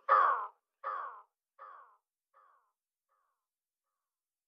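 The last shouted vocal word repeating as a delay echo about every three quarters of a second, each repeat fainter, dying away within about three seconds.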